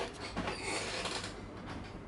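Handling noise: a single knock, then faint irregular rubbing and rustling.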